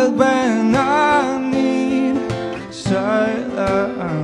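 A man singing live, accompanying himself on an acoustic guitar.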